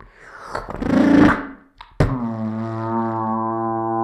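Beatboxer's mouth sounds into a handheld microphone: a loud breath rush that swells for about a second and a half, then a sharp click, and a low, steady hummed drone like a didgeridoo that slides down slightly into pitch and holds.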